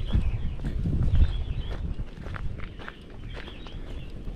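Footsteps of a person walking on a rough, stony dirt track, an irregular run of crunching steps.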